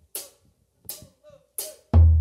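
Drummer's count-in: three short, evenly spaced hi-hat ticks about 0.7 s apart, then the forró band comes in with bass and drums just before the end.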